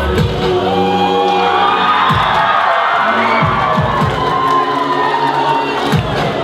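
Live music for a Tongan tau'olunga dance, with a crowd cheering and letting out high whoops over it.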